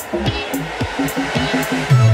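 Background music: a quick, plucked-string melody with a hissing swell building up through the second half.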